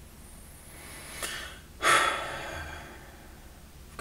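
A man draws a breath and lets out a heavy sigh about two seconds in, starting suddenly and trailing off over about a second.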